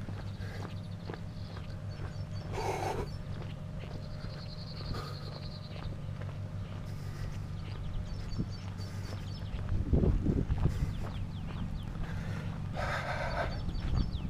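A lorry's diesel engine idling with a steady low hum, and footsteps on a gravel road; the rumble swells briefly about ten seconds in.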